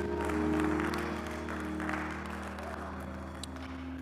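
Church music of sustained held chords over a deep steady bass note, with clapping that dies down over the few seconds.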